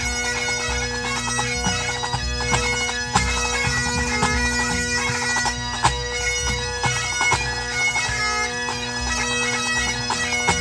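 A Grade 1 pipe band playing: Great Highland bagpipes carry the tune over steady, unbroken drones. Snare, tenor and bass drums strike in time beneath them.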